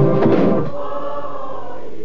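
Trailer music with a choir holding a sustained chord. A brief, busier passage at the start settles into the long held chord.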